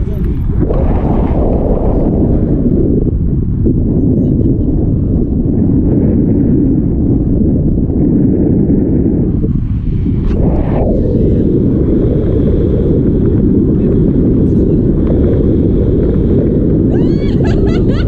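Steady wind buffeting the microphone of a pole-held camera on a tandem paraglider in flight, a loud, low rushing noise. A brief high warbling sound comes near the end.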